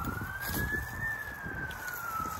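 Emergency vehicle siren on a slow wail, its pitch rising for about a second and then slowly falling, over a low rumble.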